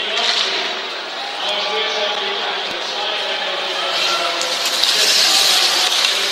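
Ice hockey arena crowd: a dense mass of voices that swells louder about four seconds in.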